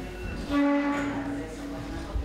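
A band wind instrument holding one steady note for about a second, then continuing more softly at the same pitch: a single note played by a player between pieces.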